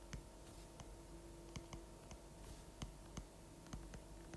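Stylus tip tapping and clicking on a tablet's glass screen during handwriting: about a dozen faint, irregular clicks over a low steady hum.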